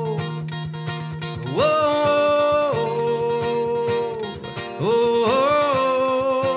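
Live acoustic guitar strummed steadily under a sung 'whoa' chant: long held vowel notes that climb about one and a half seconds in, drop back, and climb again near the end.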